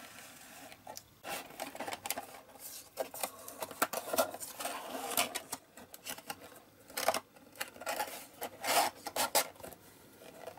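Cardboard rubbing and scraping as a card display tray is slid into a printed cardboard box and the end flap is folded and tucked in. The scuffs are irregular, the loudest about seven and nine seconds in.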